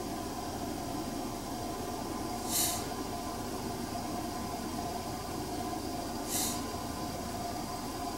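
Steady hum inside a car cabin while the car stands in traffic, with two short high hisses, one about two and a half seconds in and one about six seconds in.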